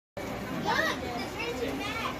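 Children's voices in a busy crowd, with one child's high voice rising and falling just under a second in, over a steady background of chatter.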